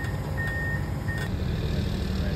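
Komatsu PC490HRD-11 demolition excavator's travel alarm beeping twice over the steady drone of its diesel engine as the machine moves; the beeping stops about a second and a quarter in while the engine runs on.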